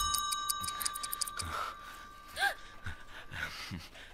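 A film sound effect for a watch: one clear, high ringing tone, like a struck chime, sounds at the start and fades out over about three seconds, over faint clock-like ticking.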